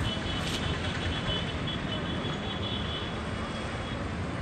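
Steady outdoor background noise: a low rumble of wind on the microphone over distant road traffic, with a faint high steady tone.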